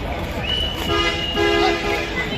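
A horn toots twice in quick succession about a second in, each a short steady-pitched note, over background chatter.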